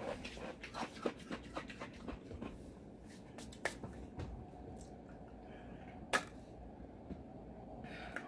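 Light clicks and taps from small objects being handled close to the microphone: a quick run of small clicks that thins out over the first three seconds, then two sharper single clicks, one near the middle and one a couple of seconds later.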